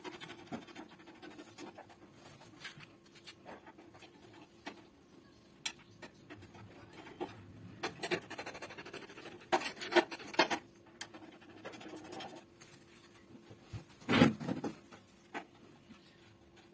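Irregular scratching, clicks and knocks of hands handling the metal parts and wiring inside an opened gas water heater, with a louder knock about fourteen seconds in. A faint steady hum runs underneath.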